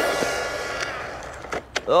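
MJX Hyper Go brushless RC car on a 3S lipo speeding away after a flat-out pass: its motor whine falls in pitch and fades. A few sharp knocks follow near the end.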